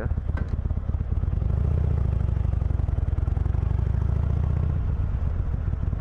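Harley-Davidson Iron 883's air-cooled V-twin running while riding, with a fast uneven pulse. It gets louder about a second and a half in under more throttle and eases back near the end.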